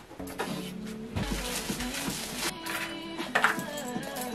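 Background music, a melody of held notes stepping from pitch to pitch. A stretch of hiss-like noise lies under it between about one and two and a half seconds in.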